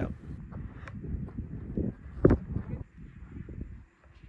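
Wind buffeting the microphone in uneven gusts, with one short sharp thump a little past halfway.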